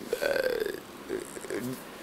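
Speech only: a man's hesitant "uh", about half a second long and falling in pitch, between phrases.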